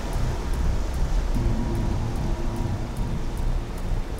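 Steady roar of a large waterfall and churning rapids, under background music with a held low note and faint ticking about four times a second.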